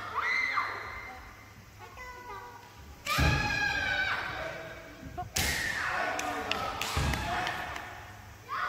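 Kendo sparring between children: high-pitched kiai shouts with thuds from stamping feet and shinai strikes. The two loudest come about three seconds and five and a half seconds in, each a sharp impact followed by a long shout, with a short shout early on and another thud about seven seconds in.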